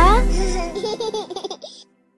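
Logo jingle: music with a small child's giggling laughter over it, which stops abruptly shortly before the end.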